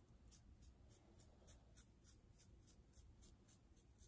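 Faint, quick scratching strokes on hair and scalp close to a microphone, about four a second.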